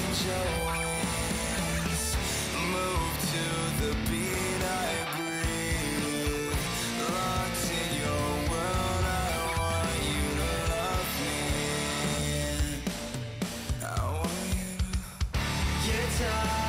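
A grunge-style rock song with electric guitar and a sung male vocal. The backing briefly thins out near the end.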